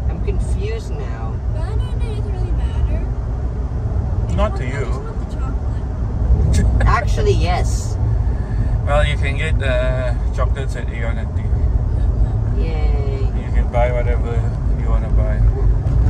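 Steady low rumble of a car on the road, heard from inside the cabin.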